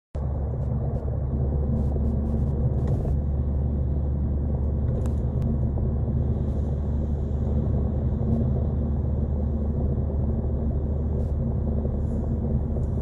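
A steady low rumble with a few faint clicks.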